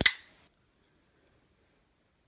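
Zero Tolerance 0055 titanium framelock flipper knife flicked open on its KVT ball-bearing pivot, the blade snapping into lock with a single sharp click that rings briefly.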